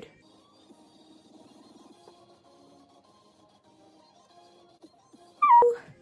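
Faint background music playing quietly. Near the end comes one short, loud high-pitched cry that drops in pitch.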